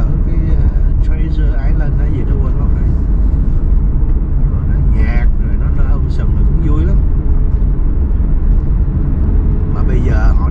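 Steady low rumble of road and engine noise inside a moving car's cabin, with brief bits of a man's voice over it.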